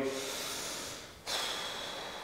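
A man breathing audibly: two breaths of about a second each, with a short gap about a second in.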